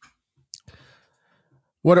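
A single short, sharp click about half a second in, in an otherwise quiet pause; a man starts speaking near the end.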